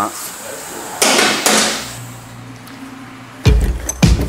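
Short rasping burst of a ratchet working on a motorcycle's front axle about a second in, followed by a low steady hum. Music with a heavy beat starts near the end.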